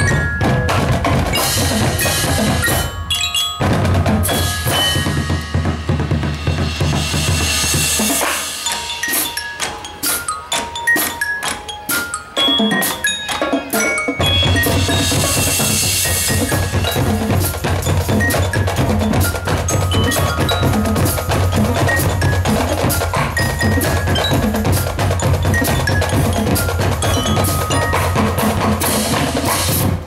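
Marching band percussion section playing a feature: bass drums and snare drums with mallet keyboards ringing out pitched notes over a dense, fast rhythm. The low drums thin out for several seconds in the middle, then the full section comes back in.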